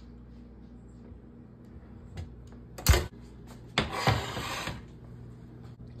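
Oven being loaded: a sharp metal knock about three seconds in, then about a second of rattling scrape from the oven rack and door, over a low steady hum.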